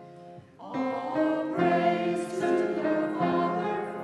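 A congregation singing a hymn together, with a brief break between lines about half a second in before the singing picks up again.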